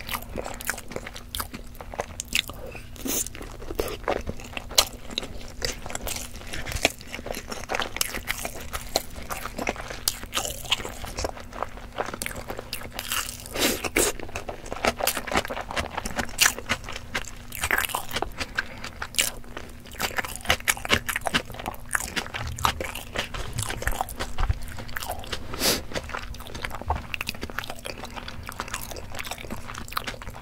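Close-miked chewing of a peeled hard-boiled egg: a steady stream of irregular mouth clicks and biting sounds.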